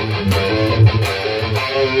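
EVH Wolfgang electric guitar played through a HeadRush pedalboard amp model set to full-drive distortion with a light sweet chorus, picking a fast riff of changing notes over low notes.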